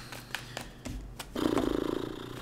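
Light clicks and taps of tarot cards being handled. About one and a half seconds in, a man gives a short, low, buzzy hum with closed lips.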